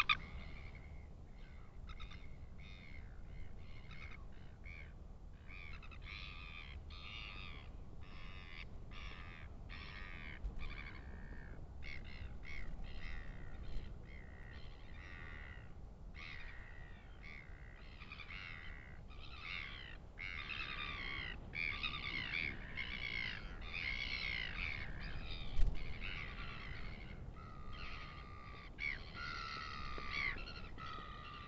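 Birds calling: many short, harsh calls follow one another, busiest about two-thirds of the way through. A single loud bump comes near the end, over a low steady rumble.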